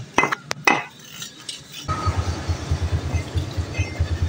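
Metal clinks and knocks as the steel magneto flywheel rotor of a Yamaha Mio J is handled and set down on a concrete floor. About two seconds in, a steady low rhythmic pulsing, like a small engine idling, starts and runs on.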